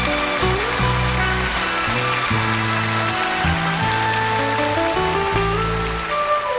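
A live backing band plays an instrumental passage of a Shōwa-era kayō song with no singing. Held chords sit over a bass line that steps from note to note, while a melody line climbs in steps.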